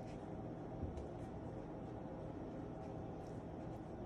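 Steady low room hum with faint, brief crinkles of a paper-wrapped butter stick being rubbed over the tops of hot biscuits.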